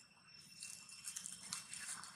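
Dry leaf litter crackling and rustling under moving feet: a quick run of small, light crackles that starts about half a second in and grows denser, over a faint steady high hum.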